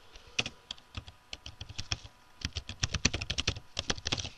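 Typing on a computer keyboard: a few scattered keystrokes, then a quick run of keystrokes in the second half.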